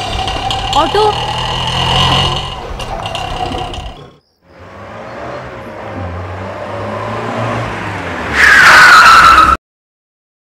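A car approaches, its engine noise rising for several seconds. It then stops with a loud tyre and brake screech that falls in pitch. The sound cuts off abruptly just before the end. Before the car, there is other film soundtrack sound that ends about four seconds in.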